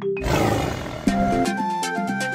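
A cartoon lion's roar sound effect, one short loud burst that dies away within about a second, over a few plucked notes. Then an upbeat children's song starts with a steady beat.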